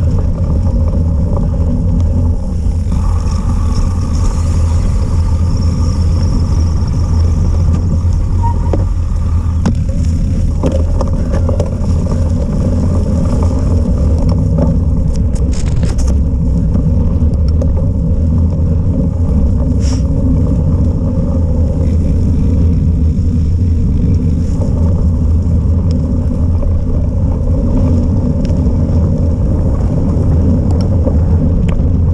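Steady low rumble of wind buffeting an action camera's microphone and cyclocross bike tyres rolling along a forest path at race pace, with a few brief clicks around the middle.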